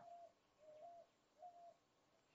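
Near silence in which a bird calls faintly three times, each a short note with a slight rise in pitch.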